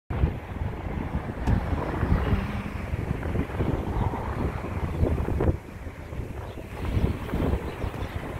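Wind buffeting the microphone in irregular gusts, with a low rumble underneath, easing a little over halfway through.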